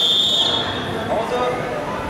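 Referee's whistle: one short, high, steady blast right at the start, stopping the wrestling bout. Voices follow in the hall.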